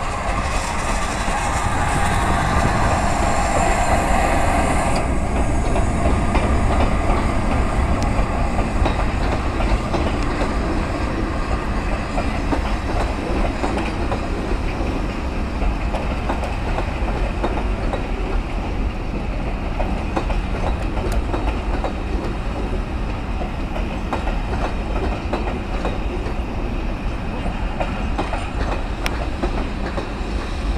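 GWR Castle class 4-6-0 steam locomotive and its passenger coaches passing close by. A loud hiss for the first five seconds cuts off suddenly, then the coaches roll past with a steady clickety-clack of wheels over the rail joints.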